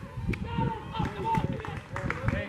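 Indistinct voices talking and calling out, with one sharp click about a third of a second in.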